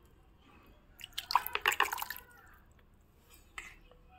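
Water splashing and sloshing in a plastic bucket as a plastic mug is dipped and swirled through it, stirring in liquid fertilizer. The splashes come in a short cluster between about one and two seconds in, with a single small splash near the end.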